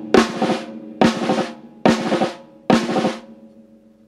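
Snare drum played with sticks: the six-stroke roll rudiment played fast, a run of quick strokes opening on a loud accent and repeated about once a second. It stops shortly before the end.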